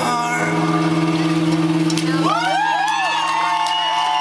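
The band's final chord on acoustic guitars and bass rings out and is held. About halfway through, the audience starts whooping and cheering over it.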